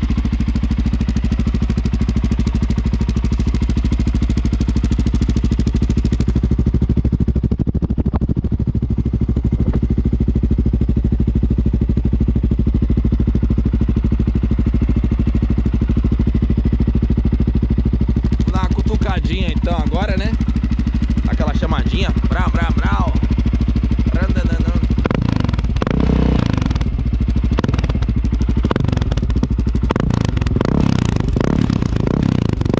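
Honda trail motorcycle's single-cylinder four-stroke engine idling steadily through a Dore aftermarket exhaust, a deep idle with a crackly edge. A plastic bag held at the tailpipe rustles in the exhaust pulses.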